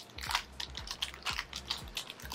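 Irregular crackling and clicking of a small blind-box pin package being handled and opened.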